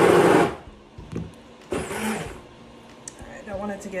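Stick blender run in two short pulses in a small cup of thick goat milk soap batter, the first for about half a second at the start and a second around two seconds in. The pulses are kept brief so the batter doesn't get too thick.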